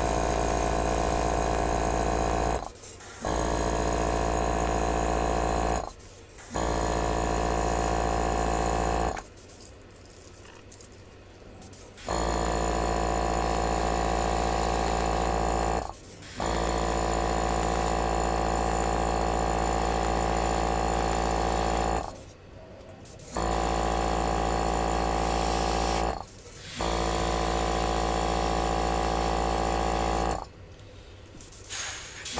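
Small airbrush compressor motor running with a steady hum, cutting out and restarting about six times: mostly short breaks, one lasting about three seconds.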